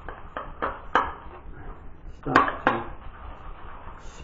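Synthetic-knot shaving brush whipping lather in a bowl, the bristles and handle swishing and tapping against the bowl in short strokes: a quick run of four in the first second, then two louder ones past the middle.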